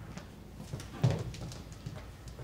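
Quiet footsteps and shuffling of people moving on a theatre stage, with a soft thump about a second in and a few lighter knocks over low room noise.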